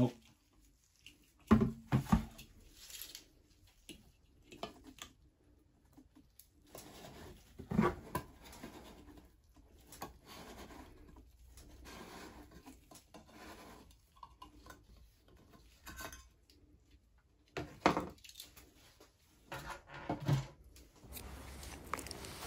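Screwdriver prying at the rim of a metal Flex Seal can to work its press-on lid loose: scattered metal clicks and knocks with faint scraping in between, until the lid comes off.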